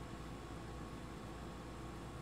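Steady hiss from the recording chain with a faint low hum: room tone with no distinct sound.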